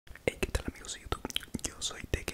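A man whispering very close to a handheld recorder with a furry windscreen, broken by many short sharp mouth clicks.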